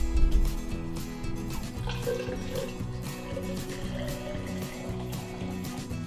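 Background music, with water being poured slowly into a tall glass half full of layered syrup and dishwashing liquid beneath it. A single knock comes at the very start.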